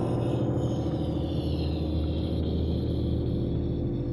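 Low, steady drone from the animated episode's soundtrack: a dark sustained chord with a faint high tone slowly sliding down near the start.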